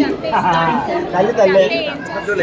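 People talking over one another in close conversation, with no other sound standing out.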